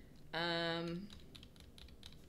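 A held, steady-pitched 'um'-like hum from a voice, then a quick run of taps on a computer keyboard, typing in the next stock symbol.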